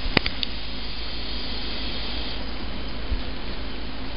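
Steady rush of tap water running through a plastic hose into the cooling-water container around a still's copper condenser coil, filling it. A single sharp click just after the start.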